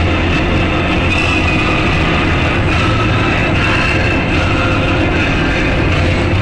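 Loud, dense rock music.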